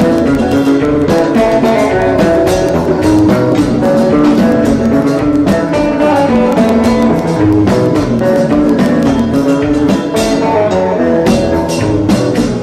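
Live Haitian konpa band playing an instrumental passage: guitar lines over a steady drum beat.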